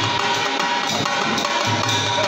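Devotional bhajan music: a two-headed barrel drum played with the hands in a steady rhythm over held harmonium tones.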